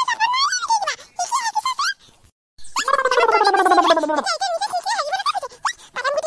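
High-pitched, squeaky cartoon character voices that waver up and down. After a brief pause about two seconds in comes one long voiced sound that slides steadily down in pitch.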